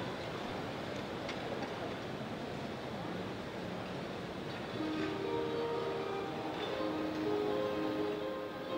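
Steady background noise of a large hall, then about five seconds in an orchestra starts playing softly, with long held notes.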